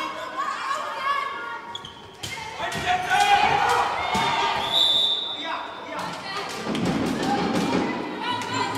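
Handball bouncing and thudding on a wooden sports-hall floor during play, with girls' voices calling out across the echoing hall. A brief steady high tone sounds about five seconds in.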